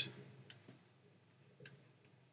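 A few faint, short clicks at a computer desk while painting digitally: one about half a second in, another just after, and a third near the end, with near silence between them.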